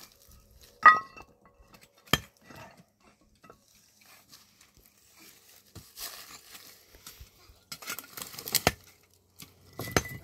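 Loose stones knocking and clinking together as they are lifted and moved by hand. The loudest is a sharp, briefly ringing clink about a second in, with another knock near two seconds and a cluster of knocks and scrapes around eight seconds.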